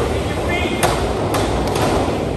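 Echoing indoor pool hall with a steady hiss of water and ventilation. A few sharp knocks and slaps come about a second in and again shortly after, with a brief voice just before them.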